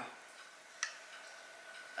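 A single light click about a second in as a small black plastic video doorbell is handled and turned over in the hands; otherwise quiet room tone.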